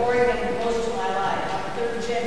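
A person talking in a large gymnasium, the words indistinct.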